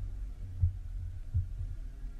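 A steady low hum with three soft, low thumps: one about two-thirds of a second in and two more close together about a second later.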